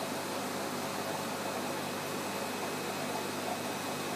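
Steady hiss with a faint hum: background room tone with no distinct event.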